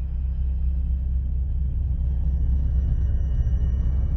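A deep, steady rumble from a science-fiction sound effect for a huge starship gliding past, slowly growing louder, with faint thin high tones above it.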